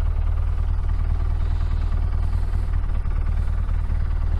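Motorcycle engine running steadily at low revs, a low even rumble, as the bike rolls slowly.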